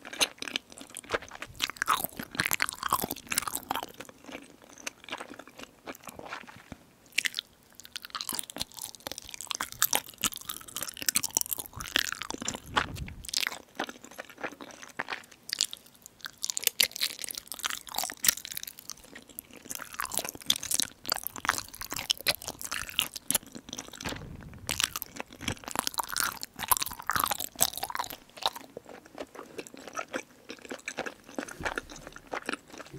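A person chewing and biting food close to the microphones: a continuous run of irregular crunchy bites and wet mouth clicks and smacks.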